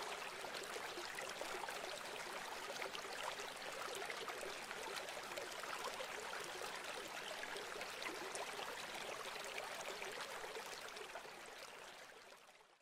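Running water, a steady quiet rush that fades out near the end.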